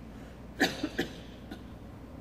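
A person coughing: three short coughs in quick succession about half a second in.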